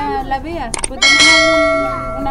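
A bell rings once about a second in, with a sudden strike and a bright, many-toned ring that fades slowly. Just before it come two sharp clicks.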